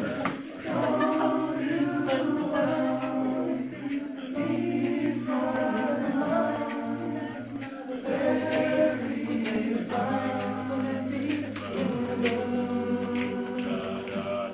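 A cappella choir singing unaccompanied in close harmony: sustained chords over a steady low bass line, the chords changing every second or two.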